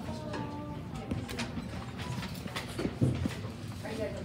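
Low hubbub from a school band and hall while the band is not playing: brief stray instrument notes and murmur, with scattered knocks and a louder thump about three seconds in.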